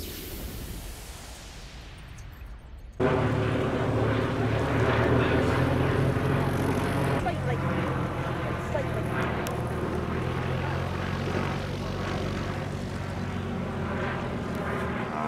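A fading whoosh, then suddenly, about three seconds in, the steady propeller drone of a Fairey Swordfish biplane, with its Bristol Pegasus radial engine, and a Stinson Reliant flying together in formation.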